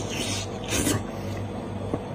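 Close-miked chewing and wet mouth sounds of a person eating braised goat head meat, with two louder smacking bursts, the second just under a second in.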